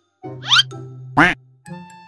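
Background music with two loud comic sound effects laid over it: a quick rising sweep about half a second in, then a short cartoon duck quack about a second in.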